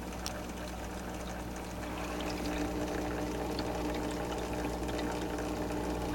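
Oceanic BioCube protein skimmer running in a saltwater tank's filter chamber: its small pump hums steadily while water and air bubbles churn through it. The hum gets slightly louder about halfway through.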